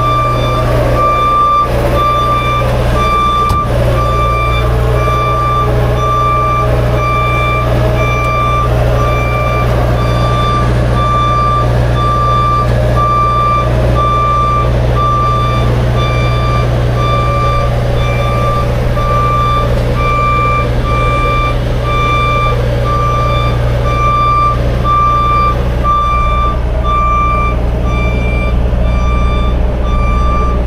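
Vehicle backup alarm beeping steadily, about once a second, over the steady low running of a heavy truck's diesel engine.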